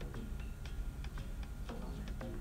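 Quiet background music under a pause in the narration: soft, even ticks about four a second over a low, steady bass.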